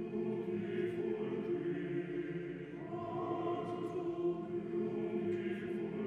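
Male choir singing slow, sustained chords, the voices holding long steady notes, with a higher line swelling about halfway through.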